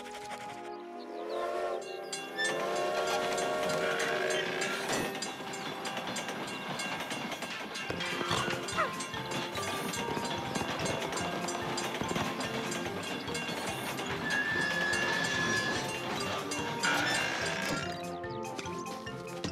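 Cartoon train sound effects at a station: a train running, with one steady whistle blast of about a second and a half near the end, over background music.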